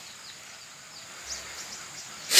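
Faint outdoor ambience: a steady high-pitched insect drone, with a couple of faint short chirps about halfway through.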